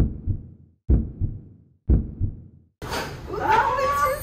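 Heartbeat sound effect: three slow double thumps about a second apart, low and dull, with silence between them. Music comes back in near the end.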